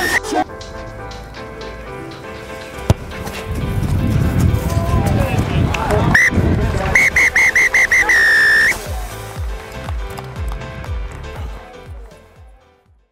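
Referee's whistle blown near the end of a rugby union match: a blast, then a quick run of six short peeps and one longer blast, all at the same shrill pitch, over music.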